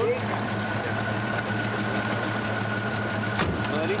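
A vintage car's engine idling steadily, with a single knock about three and a half seconds in.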